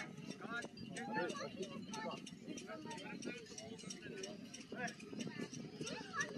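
Quiet, indistinct talk among a few people, with scattered short clicks throughout; no clear jet or motor sound stands out.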